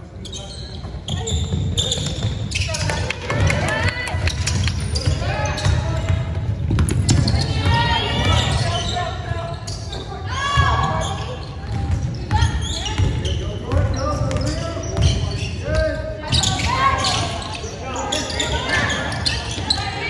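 A basketball game in a gym: a ball bouncing on the hardwood court under many voices of players and spectators calling out, echoing in the large hall.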